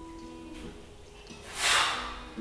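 Background guitar music with held notes. Near the end comes one short, loud rush of breath: a forceful exhale as a man pushes himself back up off the floor during a hard bodyweight exercise.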